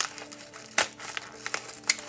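Utility knife cutting through a taped cardboard and plastic mailer, with several sharp crackling snaps as the blade slices the tape. The loudest snaps come just under a second in and near the end.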